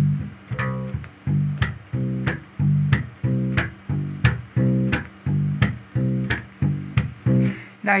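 Electric bass guitar playing a root-and-fifth line, short notes alternating between root and fifth at an even pace of about three notes every two seconds. Each note is ended by a sharp percussive slap, an accent on the end of each root or fifth that stands in for a drummer's backbeat.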